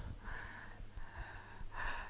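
Soft breathy sounds and scattered low bumps of a microphone being handled, over a steady low electrical hum; the microphone is not working properly.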